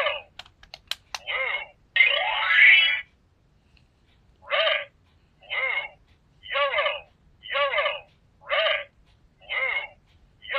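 Electronic memory-game cube toy sounding its electronic tones: a few button clicks and short sounds near the start, a longer louder sound around two seconds in, then after a short pause a series of short tones about once a second, the toy playing out a sequence to remember.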